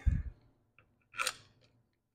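Hand-tool handling noise as a flange bolt is run in by hand with a screwdriver on the engine's gear reduction cover: a soft bump at the start and a short metallic scrape about a second in.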